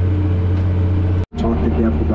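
Case IH Quadtrac tractor engine droning steadily, heard from inside the cab while pulling an anhydrous ammonia application bar. The sound drops out abruptly about a second in, then the same drone resumes.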